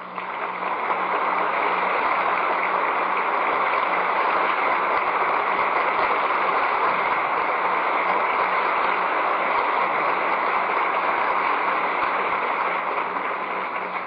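Audience applauding: a steady, dense clapping that swells in within the first second and starts to fade near the end, with a faint low hum under it.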